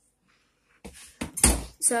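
Dead silence for under a second, then a few clicks and knocks with one heavier thump about a second and a half in, like household objects or a door being handled.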